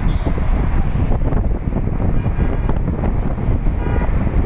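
Wind buffeting the microphone over the road noise of a moving vehicle: a loud, steady, low rumble.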